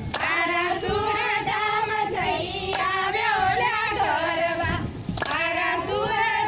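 High-pitched voices singing a garba song in a held, wavering melody, with a brief break near the end.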